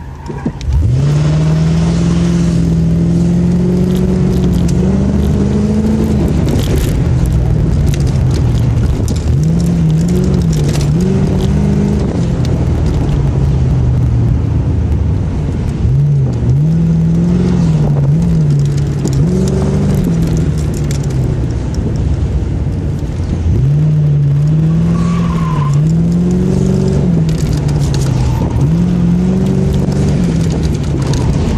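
Car engine heard from inside the cabin on an autocross run: it launches hard about a second in and climbs steadily for several seconds, then revs up and falls back again and again as the car accelerates between cones and lifts off for turns.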